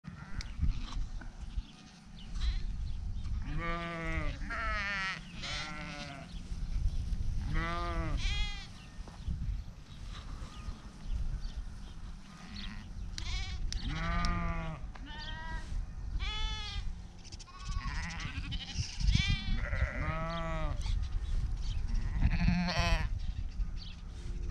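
A flock of sheep bleating: a dozen or more wavering calls of differing pitch, some overlapping, coming in clusters over a steady low rumble.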